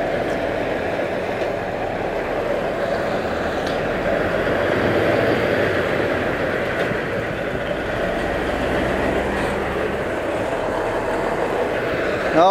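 Heavy semi-truck diesel engine running close by as the rig creeps slowly forward, a loud steady rumble with a low drone and no break.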